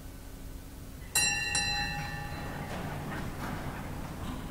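A small metal bell, the sacristy bell, struck twice about half a second apart, its clear tones ringing on and fading. The bell signals the start of Mass as the priest enters.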